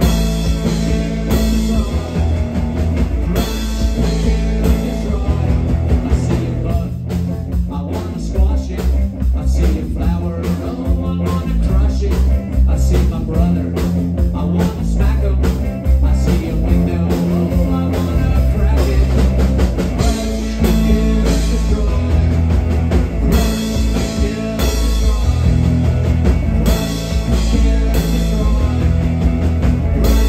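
Live rock band playing a song: electric guitar, electric bass and drum kit, with a strong bass line and a steady drum beat.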